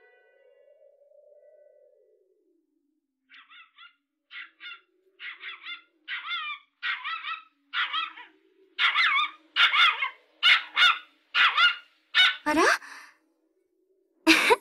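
A dog whimpering and yipping. Its short wavering cries start about three seconds in, come often in pairs, and grow louder and closer together toward the end.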